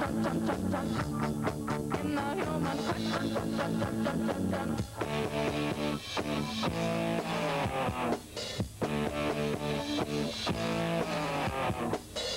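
Instrumental passage of a rock song played by a band with guitars and bass. A quick, even strummed rhythm in the first few seconds gives way to longer held chords, with short breaks.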